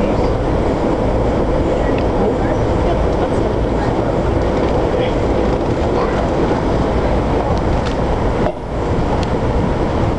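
Amtrak Capitol Limited passenger train running along the track, its steady rolling noise heard from inside a passenger car, with a brief drop in loudness about eight and a half seconds in.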